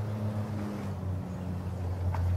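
A steady low motor hum, with faint rustling and small knocks as a rolled-up change of clothes is pulled out of a backpack.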